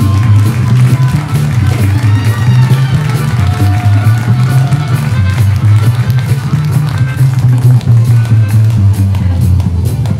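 Live blues jam: harmonica played into a microphone, its notes bending, over a steady upright bass line, with acoustic guitar.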